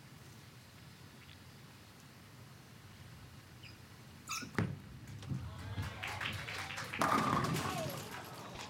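A bowling ball dropping onto the lane with a thud about four seconds in, rolling down the lane, then crashing into the pins about seven seconds in, with a clatter of falling pins that fades.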